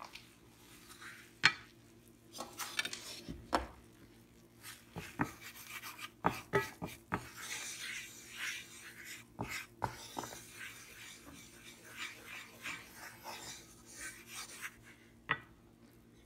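Wooden spoon stirring a foaming butter-and-flour roux in a nonstick frying pan: scattered knocks and taps of the spoon against the pan, with rasping scraping strokes through the middle.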